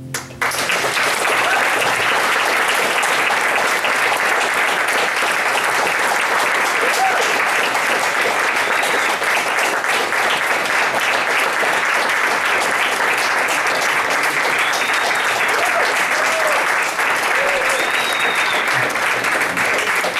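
Audience applauding, breaking out right as the song's last piano chord ends and going on steadily.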